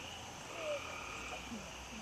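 Steady, high-pitched chorus of night insects, with a short falling tone rising above it a little under a second in.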